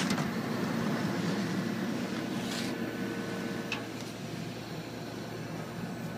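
Steady mechanical hum of a powered-up Okuma & Howa Millac 438V CNC vertical machining center standing idle, its axes not moving. A sharp click at the very start as a hand knocks the machine's sheet-metal cover.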